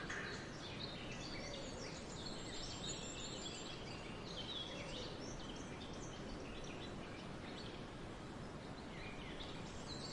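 Several songbirds chirping and singing in quick short calls and trills, over a steady background hiss.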